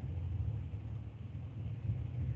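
Low steady rumble picked up through an open microphone on a video call, with no speech over it.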